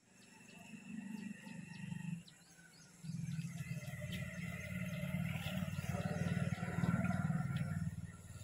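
Faint outdoor ambience: a low rumble that drops out for about a second just after two seconds in, then returns and grows a little louder, with faint bird calls above it.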